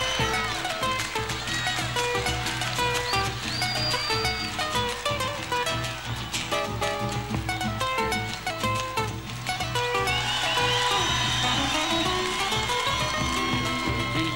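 Live Argentine folk band playing an instrumental introduction: a run of plucked melody notes over a steady bass and a dense drum beat, before the vocal comes in.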